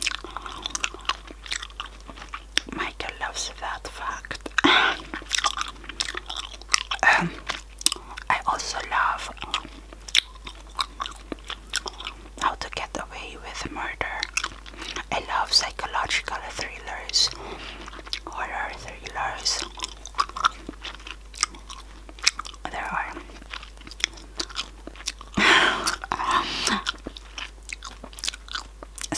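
Close-miked open-mouthed chewing of Chupa Chups Tutti Frutti bubble gum: an irregular stream of wet smacks and clicks, thicker and louder near the end.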